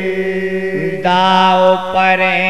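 Bundeli Diwari folk singing: a man's voice holding a long drawn-out note, joined about halfway by a second, higher voice holding its own note.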